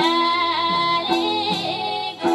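A woman singing a Nepali folk song into a microphone, holding a high, wavering, ornamented note, over instrumental accompaniment that moves on about every half second.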